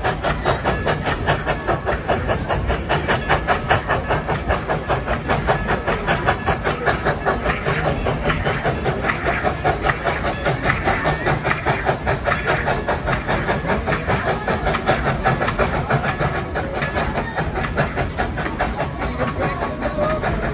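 Coal-fired steam locomotive Dollywood Express #70 working as it pulls a passenger train, its exhaust chuffing in a fast, even rhythm.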